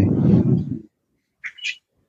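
A person's voice trailing off into a breathy, noisy sound that fades out within the first second, then a brief faint high chirp about a second and a half in.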